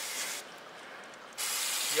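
Aerosol brake cleaner spraying onto a scooter's oil drain plug in two bursts: the hiss stops shortly after the start and comes back about a second and a half in.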